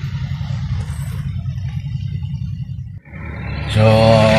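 Steady low rumble of city street traffic, cut off abruptly about three seconds in, then a man starts talking.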